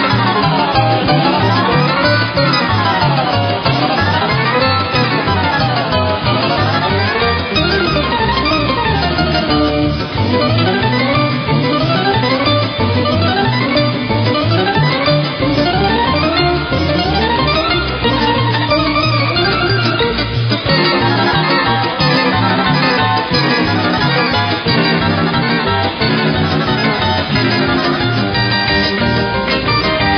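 Electric guitar played live: fast single-note runs sweeping up and down the neck again and again in the first ten seconds, then quick rising runs, while low notes pulse steadily underneath.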